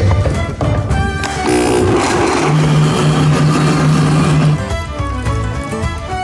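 Countertop blender motor running for about three seconds, from about a second and a half in, blending scoops of ice cream and liqueur into a thick milkshake, with a steady low hum. Background music plays throughout.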